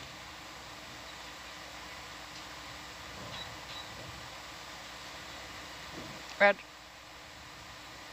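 Steady background hiss with a faint hum from the ROV control room's equipment, with one short spoken sound about six and a half seconds in.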